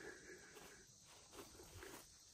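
Near silence: faint outdoor background.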